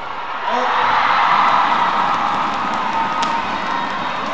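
Badminton arena crowd cheering and shouting through a rally, the noise swelling about half a second in and holding steady, with a single sharp shuttlecock hit about three seconds in.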